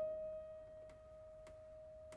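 Classical cello and piano duo in a near pause: a single high held note fades slowly away, with a few faint clicks.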